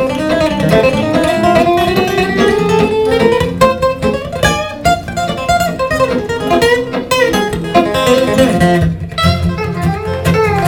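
Electric and acoustic guitars playing an instrumental break of a country song, a picked lead line over acoustic rhythm. In the first few seconds the lead slides steadily upward in pitch.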